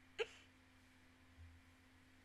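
A woman's single short giggle just after the start, one brief sound falling in pitch, followed by near silence with a faint steady hum.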